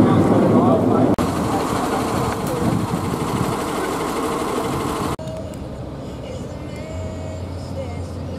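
Busy outdoor noise with voices, then a fire engine running from about a second in; about five seconds in it cuts suddenly to a much quieter indoor room.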